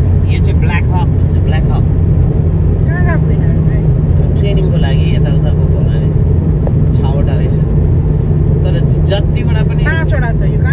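Steady low rumble of a car driving at highway speed, heard from inside the cabin, with voices talking over it.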